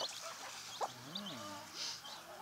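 Day-old ISA Brown chicks peeping faintly, a few short high peeps, with a low soft call about a second in.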